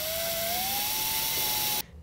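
Power drill driving a self-tapping screw through a metal bracket. Its motor whine rises in pitch as it speeds up, holds steady, then stops suddenly near the end as the screw seats.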